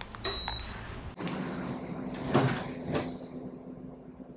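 A short, high electronic beep from a wall-mounted split air conditioner taking a command from its remote. About a second in, a steady low hum begins, with two soft thumps as someone climbs onto a bed.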